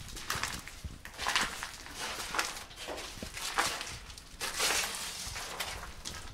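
Footsteps on a floor covered in loose broken tile and plaster debris, roughly one step a second.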